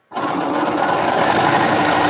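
Bernina electric sewing machine starting up and running at a steady fast speed, stitching a seam through pieced quilt fabric.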